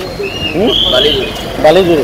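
A voice talking outdoors, with a short high-pitched chirp over it in the first second.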